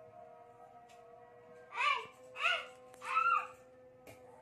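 Caracal kitten meowing three times in quick succession, each call high-pitched and rising then falling in pitch, from a little under two seconds in.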